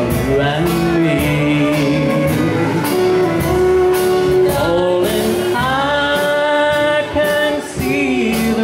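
Live country band playing a song, a voice singing held notes over guitar and a steady drum beat.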